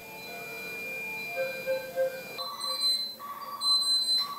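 Electronic beeping from neonatal intensive-care equipment (incubator and patient monitors), short high tones repeating over a faint steady hum of machines; the beeping becomes more regular from about halfway in.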